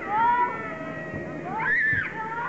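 Young children's high-pitched shouts on a football pitch: a rising call right at the start and a louder one that climbs near the end.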